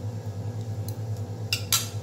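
Fried onion being scraped out of a frying pan into a plastic mixing bowl, with a brief scraping clatter near the end, over a steady low hum.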